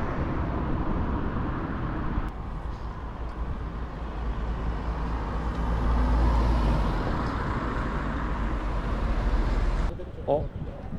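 Outdoor ambience of steady noise with a deep low rumble, like road traffic, with no speech. The sound changes abruptly about two seconds in and swells briefly around the middle.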